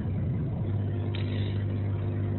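A steady low electrical-sounding hum with evenly spaced overtones over a faint hiss, heard through a narrow-band video-call line; the hum grows stronger about half a second in.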